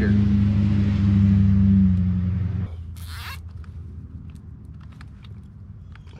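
A steady low mechanical hum, like a nearby motor or engine running, cuts off suddenly about two and a half seconds in. About half a second later comes a short rasp of a plastic zip tie being pulled tight through its ratchet, followed by a few faint clicks.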